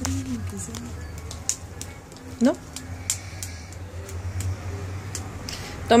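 Scattered light clicks and taps of small objects being handled, over a steady low hum.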